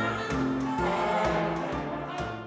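A jazz ensemble with brass and a choir performing a slow gospel-style song, several sustained sung and played notes over light percussion keeping a steady beat.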